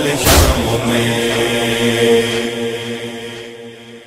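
The closing of a noha recitation: a chanted line ends on one last heavy beat just after the start, then a steady held note fades out toward the end.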